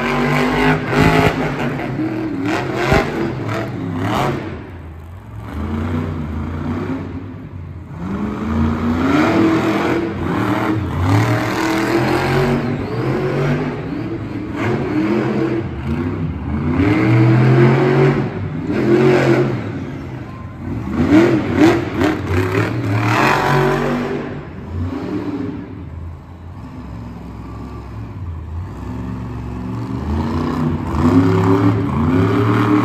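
A monster truck's big-block V8 engine revving hard, again and again, with its pitch climbing and falling in repeated surges as the truck drives around the dirt arena. The engine eases off briefly about five seconds in and again near the end.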